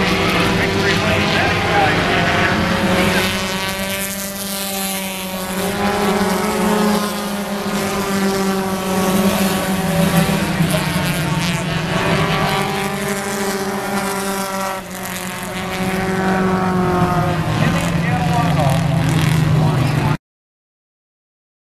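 Several four-cylinder stock car engines running on a short oval track, their pitch rising and falling as cars pass. The sound cuts off suddenly at the end.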